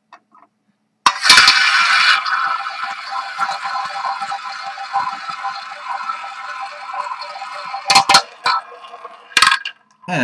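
A small tabletop roulette wheel spinning: the ball is launched about a second in and rolls around the track with a steady rattle that slowly fades, then a few sharp clicks near the end as it drops into a pocket.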